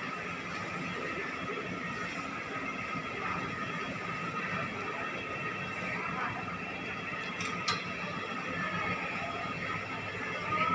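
Steady supermarket background noise, a constant hum and murmur with no clear voice standing out, and two short clicks about three-quarters of the way through.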